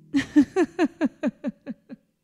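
A woman's laugh: a run of about ten quick bursts, each falling in pitch and fading toward the end, as she laughs at forgetting the lyrics mid-song. A held instrument chord dies away just as the laugh starts.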